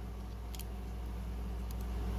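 Steady low hum of room tone, with two faint clicks as a small die-cast toy car is handled, the second as its opening hood is pressed shut near the end.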